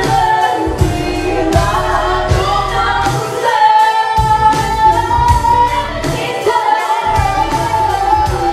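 Two female voices singing a pop song duet over backing music with a steady beat, one voice holding a long high note through the middle.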